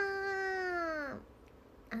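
A young woman's voice drawing out the last vowel of a spoken phrase for about a second in a long, even held note that slides down in pitch as it ends. A short "ah" follows near the end.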